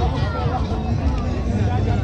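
Crowd chatter: many voices talking at once around the listener, over a steady low rumble.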